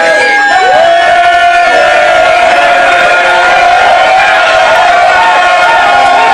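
Men's chorus and crowd singing a sea shanty together, many voices holding long notes, with wavering, swooping shouts toward the end.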